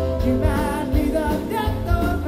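A rock band playing live with a male singer, recorded from the audience: heavy bass, guitar and drum hits under the sung line.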